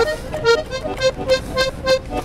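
Accordion playing a run of short, evenly spaced notes in a vallenato-style break between sung lines.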